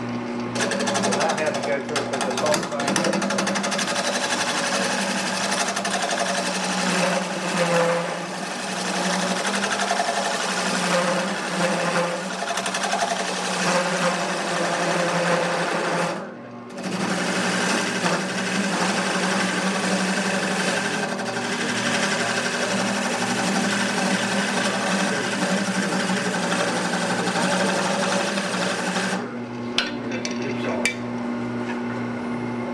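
Wood lathe running while a turning tool cuts into a spinning wooden bowl: a steady, rough cutting noise over the lathe's low hum. The cut breaks off briefly about halfway through and stops shortly before the end, leaving the hum.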